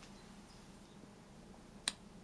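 A single sharp click near the end, over a faint steady hum.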